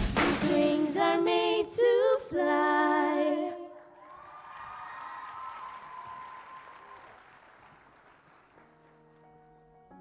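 A group of girls singing the closing phrase of a pop song over a backing track, the singing stopping about three and a half seconds in. Audience applause follows and fades away over the next few seconds, and a soft, held musical tone begins near the end.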